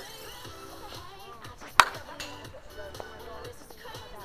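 Softball bat striking a pitched ball once, about two seconds in: a single sharp crack with a short ring.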